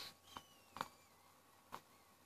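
Faint draw on a Kayfun clone rebuildable atomizer: a thin airflow whistle that slides down in pitch and then holds. This is the whistle the atomizer gives on a hit with its air screw left partly in for a tighter draw. Three soft clicks come with it, the one about a second in the loudest.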